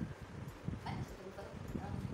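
Indistinct voice sounds from a person, coming in short uneven bursts.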